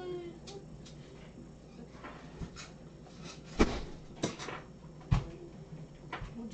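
A cat meows briefly right at the start, its call falling in pitch. It is followed by a few sharp knocks and thumps of things being handled, the loudest about three and a half seconds in and again about five seconds in.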